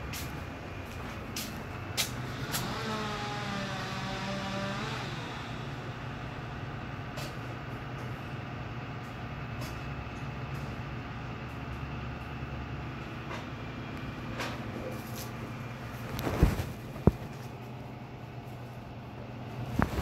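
A steady low mechanical hum, with a few sharp knocks later on.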